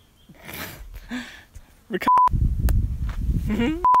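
Two short electronic bleeps at one steady pitch, a little under two seconds apart, edited into the soundtrack. Between them wind rumbles on the microphone.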